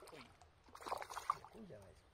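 A hooked crucian carp (mabuna) thrashing at the surface close to the bank, with a short burst of splashing about a second in. Low voices are heard around it.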